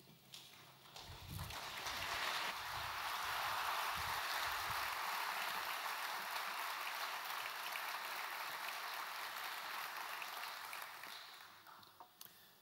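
A large audience applauding: the clapping builds up over the first two seconds, holds steady, and dies away near the end.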